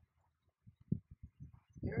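A few faint, irregular low thumps in quick succession, starting about half a second in.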